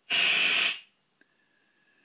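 Serge modular synthesizer putting out a band of noise, made by amplitude-modulating an oscillator with the random generator's timing-pulse noise, so the noise is centred high on the oscillator's pitch. It sounds for under a second and cuts off suddenly, followed by a faint click and a thin, quiet tone.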